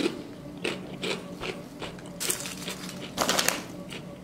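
Lentil chips crunching as they are chewed: a run of irregular crunches, the loudest about three seconds in.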